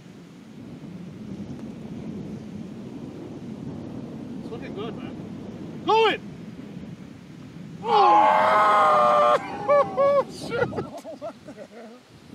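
Wind rumbling on the microphone, then a man's short cry about six seconds in and a long, loud yell a couple of seconds later, followed by a few short cries: excited shouting as a putt rolls at the hole.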